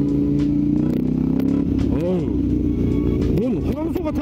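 Motorcycle engine running at road speed, heard through an onboard camera with wind rushing over the microphone; its pitch eases down a little in the first two seconds, as if rolling off the throttle.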